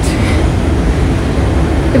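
Steady low rumble of a train station's background noise, heard while riding an escalator.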